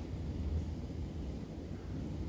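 A steady low rumble of room background noise, with no distinct events.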